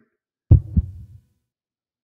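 Heartbeat sound effect, a single lub-dub: two low thumps about a third of a second apart, the first louder, fading quickly.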